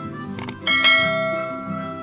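Subscribe-button animation sound effect: a mouse click about half a second in, followed by a bright bell chime that rings out and fades over about a second, over light background music.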